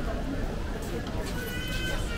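Street ambience with passers-by talking, and a steady high tone of several pitches that starts about one and a half seconds in.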